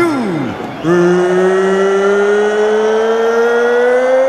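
A man's voice through an arena microphone drawing out the word 'ready' into one long held 'reee', beginning about a second in, its pitch rising slowly and steadily throughout. This is the ring announcer's trademark stretched 'Are you ready?'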